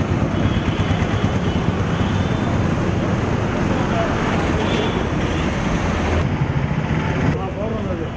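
Street ambience: steady road-traffic noise with indistinct voices talking.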